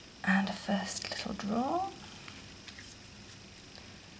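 A woman's voice, a brief soft murmur or a few untranscribed words with a rising pitch, in the first two seconds. After that it is quiet apart from a few faint light clicks as tarot cards are handled.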